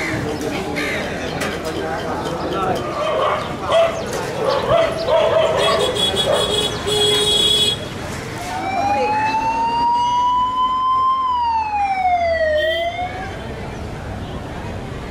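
Street voices and bustle, then from about eight and a half seconds a siren wailing: its pitch climbs slowly, falls, and begins to climb again before it cuts off.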